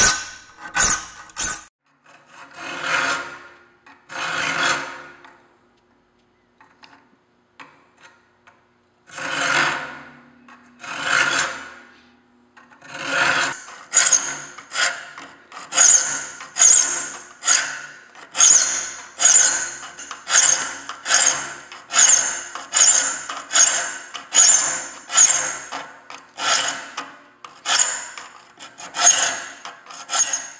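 A file rasping across the steel teeth of a handsaw plate, sharpening each tooth by filing away the flat left on its tip. There are a few scattered strokes and a pause of several seconds early on. Then the filing settles into a steady rhythm of about one and a half strokes a second.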